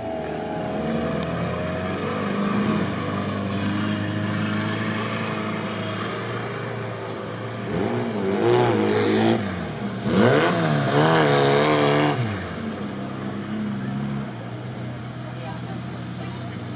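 Off-road SUV engine running under load on a sandy course, its pitch rising and falling as the driver works the throttle. It revs loudest in two bursts about halfway through.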